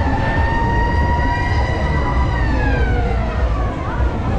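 Swing ride's drive motor whining at a steady pitch, then falling in pitch from about two seconds in as the ride begins to slow, with a brief upward glide near the end. Wind rumbles on the rider-held microphone throughout.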